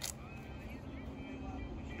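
Quiet outdoor background with low rumbling noise and faint distant voices, and a short click right at the start.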